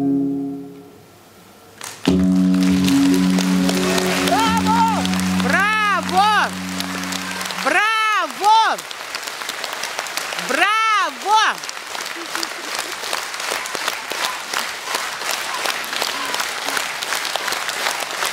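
The last piano-accompanied chord of the song dies away, and about two seconds in the audience breaks into steady applause. Several shouts from the crowd rise and fall over the clapping between about four and twelve seconds in.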